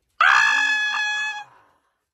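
A loud, high-pitched, drawn-out call that starts suddenly, holds nearly one pitch for about a second, then dies away.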